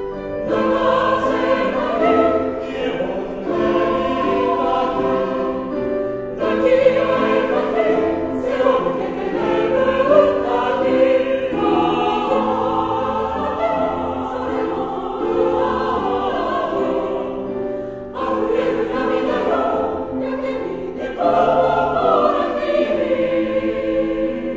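Mixed choir of men's and women's voices singing in harmony, with brief breaks for breath about six seconds in and again near eighteen seconds.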